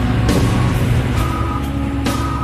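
Instrumental karaoke backing track between sung lines: sustained chords over a strong, steady bass, with no voice.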